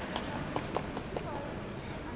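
Quiet rink ambience: faint voices and about six sharp, irregular clicks in the first second or so.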